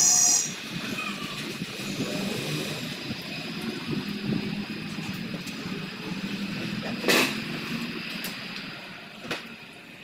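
Hand tools working on a motorcycle engine over a steady workshop background hum. A short, shrill metallic squeal comes at the start, a clank about seven seconds in, and a sharp click near the end.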